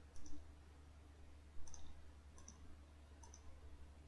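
Faint computer mouse clicks, about four spaced a second or so apart, over a low steady electrical hum.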